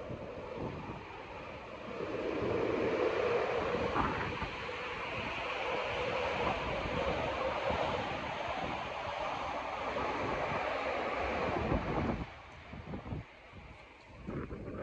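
A long gust of wind rushing over the phone's microphone, swelling about two seconds in and dying down near the end.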